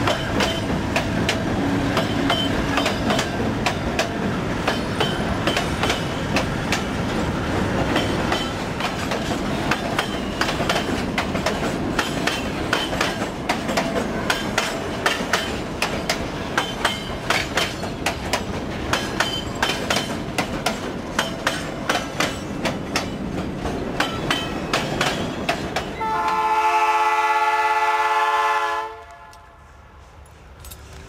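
Freight wagons rolling past close by, their wheels clicking rapidly and steadily over the rail joints. Near the end the clicking stops and a locomotive air horn sounds one long, multi-note blast that cuts off abruptly.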